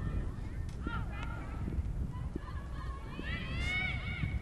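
Wind rumbling on the microphone, with a few faint, high calls that rise and fall: one around a second in and a longer run near the end.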